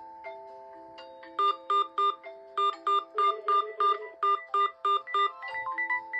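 Smartphone alarm and ringtone melodies playing over each other: a slow chiming melody throughout, joined about a second and a half in by a loud, fast run of repeated beeps, about three a second. The beeps stop shortly before the end, as a new, quicker melody begins.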